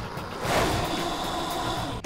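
Countertop bar blender motor running at high speed, blending pineapple, rum and ice into a smooth frozen cocktail: a steady whirring whine that gets louder about half a second in.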